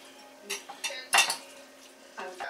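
Metal fork and utensil clinking and scraping on a plate while tossing pasta: a few short, sharp clinks, the loudest a little past halfway.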